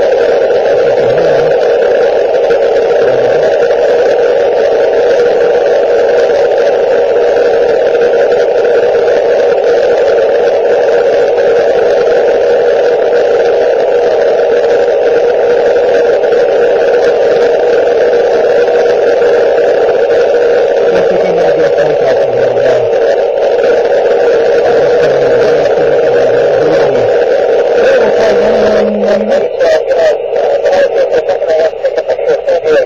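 Ham radio transceiver putting out steady, loud static hiss from an open receiver while listening on the ISS frequency for a reply.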